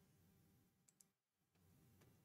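Near silence: room tone, with two faint clicks close together about a second in.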